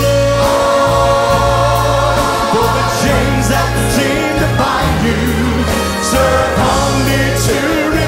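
Church choir and a lead singer performing a gospel song with band accompaniment, held vocal harmonies over a steady bass line and repeated cymbal strikes.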